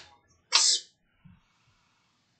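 A brief click at the start, then a single short, sharp burst of breath noise from a person about half a second in, with no voice in it.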